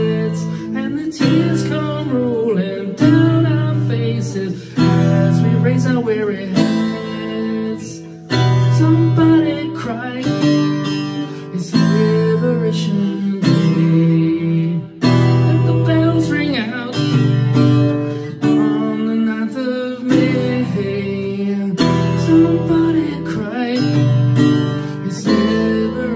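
Acoustic guitar strummed in a steady rhythm through a passage of a live acoustic song without lyrics.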